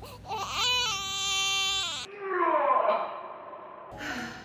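A loud crying wail that rises and then holds one pitch for about a second and a half before cutting off abruptly, followed by a falling, breathy moan.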